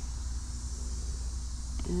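A steady high insect chorus drones over a low, steady rumble. A voice starts near the end.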